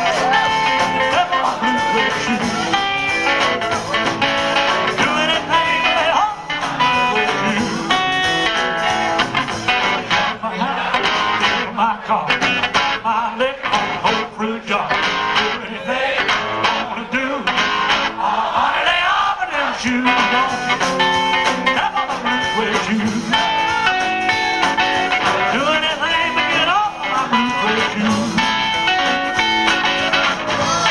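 Rockabilly band playing live: electric guitar, upright bass and drums, with music running throughout.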